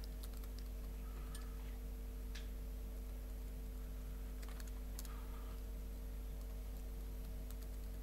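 Faint, sparse computer-keyboard keystrokes, a few irregular clicks as a line of code is typed, over a steady low electrical hum.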